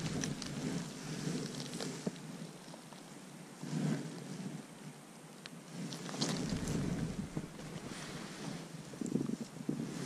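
Wind buffeting the microphone, with irregular rustling of clothing and handling noise as a bait catapult's pouch is loaded.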